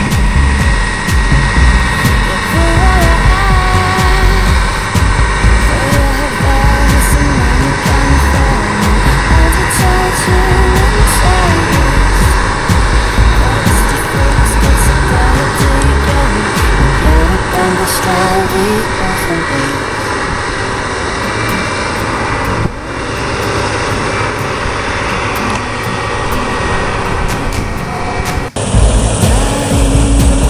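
Claas Lexion combine harvester at work cutting wheat: a steady engine and threshing drone whose pitch wavers slightly as the load changes. The sound changes abruptly twice near the end.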